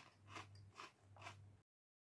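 Faint closed-mouth chewing of a crunchy Cheeto: three soft crunches about half a second apart, then the sound cuts off abruptly.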